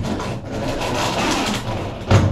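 Cordless drill running steadily for nearly two seconds, driving a screw up into the ceiling.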